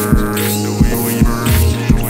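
Electronic music: a buzzing low bass tone under a rhythm of short thuds, about three a second, with bursts of hissing noise on top.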